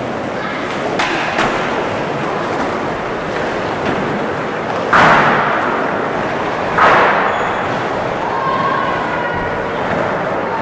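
Skateboards rolling on wooden ramps with boards slamming and clacking in an echoing hall; the two loudest slams come about five and seven seconds in.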